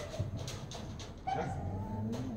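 A dog whining: a high, held note that begins a little past halfway through.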